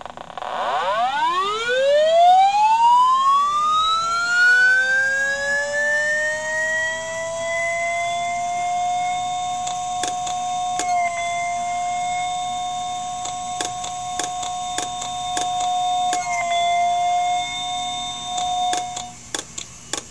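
An IBM Deskstar 7200 RPM hard drive's spindle motor, picked up electromagnetically through a telephone-listener coil and amplifier. It spins up as a whine that rises steeply in pitch over about five seconds and then holds steady. From about ten seconds in come scattered clicks of the heads seeking and resetting back to the stops, and the pitch dips twice as the motor slows and recovers. These are the signs of a dead drive that cannot load its microcode from the reserved area and will never come ready.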